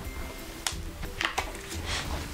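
Soft background music with steady held notes, with a few light clicks as a silicone mold is picked up and handled.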